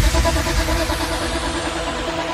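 Electronic tech trance track moving into a breakdown: the low rumbling tail of a deep bass boom under held synth pad tones, slowly fading.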